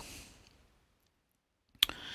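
Near silence for most of it, then a few sharp clicks near the end and a short breath just before speech resumes.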